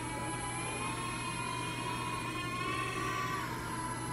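Small quadcopter drone hovering and flying, its propellers giving a steady whine whose pitch dips and rises slightly as it manoeuvres.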